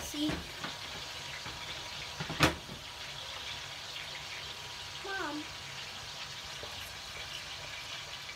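Chicken wings deep-frying in hot oil in a cast iron skillet: a steady sizzle, with one sharp clack about two and a half seconds in.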